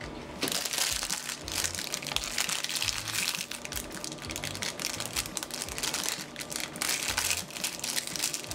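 Small shiny plastic wrapper crinkling steadily as hands open and work at it, starting about half a second in.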